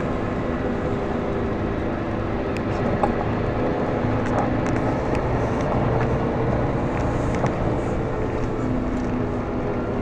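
Steady engine hum and road rumble heard from inside a tour coach as it drives slowly along a town street.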